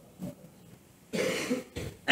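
Throat clearing: a short rough sound about a second in, followed by a smaller low one just before the end.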